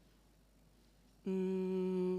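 Quiet room tone, then, about a second and a quarter in, a woman's voice hums a steady, level-pitched 'mmm' for about a second.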